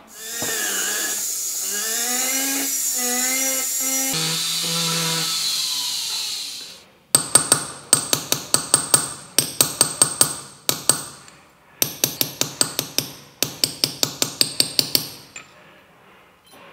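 A small hammer tapping a steel punch held on a thin gold piece, stamping a texture into it: several runs of quick, sharp taps, about five a second, with short pauses, starting about seven seconds in. Before the taps there is a steady hiss with wavering pitched tones that stops suddenly.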